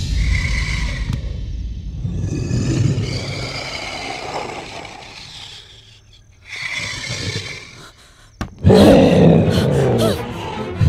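Film monster's roar from sound design: a long, deep roar that fades over about five seconds, a second shorter roar about six and a half seconds in, then a sharp click and a very loud burst near the end.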